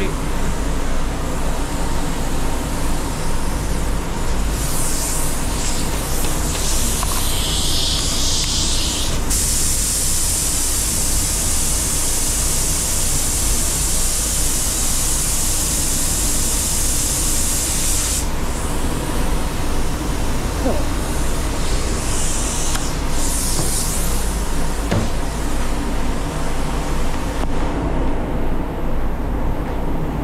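Iwata Supernova spray gun hissing as it sprays metallic silver base coat, in passes: broken bursts about five seconds in, one long pass of about nine seconds in the middle, and a few short bursts later. Under it runs a steady low rumble of the paint booth's air flow.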